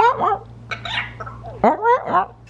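Young African grey parrot vocalizing: three short, pitch-bending squawky calls, one at the start, one about a second in and one near the end.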